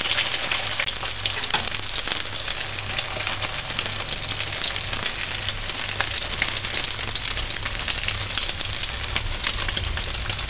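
An egg frying in hot oil in a metal pot: a steady sizzle with many small crackles and pops.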